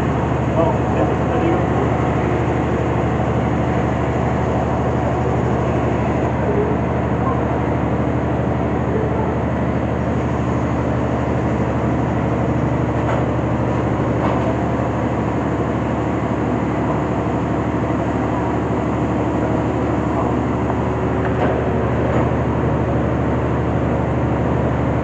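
Steady drone of a boat's engine running under way, with a constant low hum and water and wind noise, heard from on deck.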